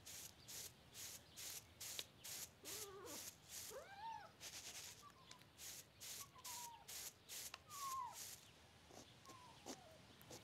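A kitten mewing several times, short calls that slide up and down in pitch, over a faint rasping repeated about three times a second that stops near the end.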